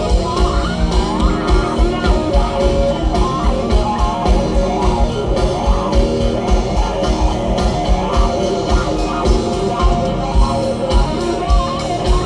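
Live rock band playing: electric guitar and bass guitar over a drum kit keeping a steady beat.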